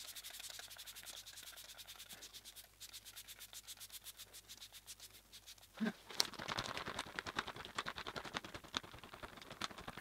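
Setting spray pumped from a small fine-mist bottle: rapid, repeated hissing spritzes, several a second. About six seconds in there is one brief, louder, lower sound, and the spritzing then goes on louder.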